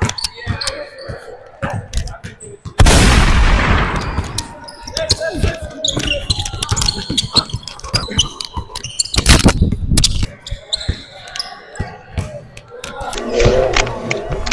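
A basketball being dribbled and bouncing on a hardwood gym floor during a pickup game: repeated sharp knocks, mixed with players' shouts. There is a loud burst of noise about three seconds in that fades over about a second.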